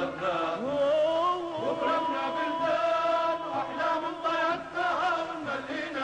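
Lebanese dabke folk song: male voices sing long held, wavering notes with a rising slide near the start, over Middle Eastern band accompaniment.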